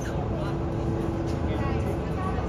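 A steady low rumble with a constant hum running through it, and faint voices in the background.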